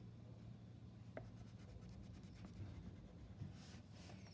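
Faint scratching of a wax crayon colouring on paper, in short strokes, over a steady low hum.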